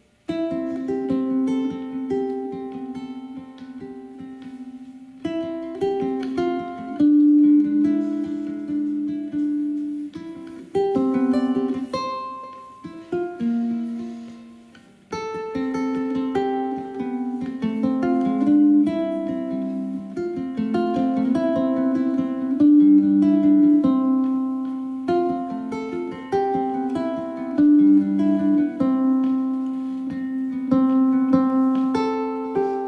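Solo ukulele playing a slow, picked melody with chords in a syncopated rhythm drawn from the flamenco bulerías. It starts right at the beginning, fades down about halfway through, and picks up again a couple of seconds later.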